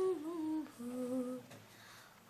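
A woman singing a Malayalam film melody unaccompanied, softly holding and bending a few notes that fall away at the end of a phrase. The voice drops out about one and a half seconds in.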